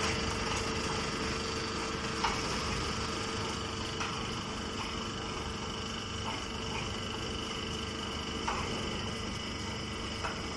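Straw-baling line machinery running steadily, a constant mechanical hum with a few held whining tones and a handful of faint ticks.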